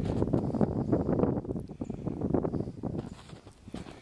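Footsteps crunching through snow, a dense run of crackly steps that grows fainter about three seconds in.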